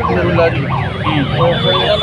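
A loud, continuous din of many people shouting at once in an agitated crowd. The many overlapping voices rise and fall in pitch with no pause, and a thin steady high tone joins near the end.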